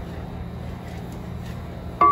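Water and melted butter in a stainless saucepan bubbling close to a rolling boil while being stirred with a wooden spoon, over a steady low rumble.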